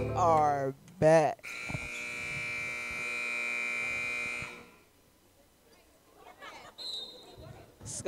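Gymnasium scoreboard horn sounding one steady, buzzing tone for about three seconds, cutting off sharply.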